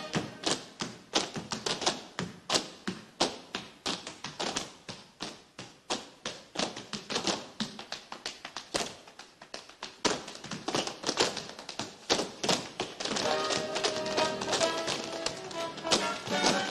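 Tap shoes of a group of tap dancers striking a stage floor in quick, rhythmic patterns. A band comes back in under the tapping near the end.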